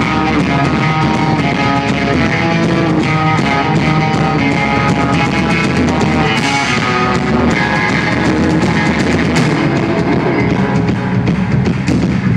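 Live rock band playing loudly: electric guitars over a drum kit. The bass is clipping and breaking up on the phone's microphone.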